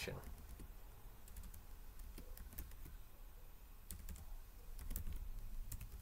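Typing on a computer keyboard: faint, scattered key clicks at an irregular pace.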